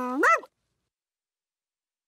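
A brief vocal sound from a cartoon character, held on one pitch and then rising at the end, lasting about half a second; silence follows.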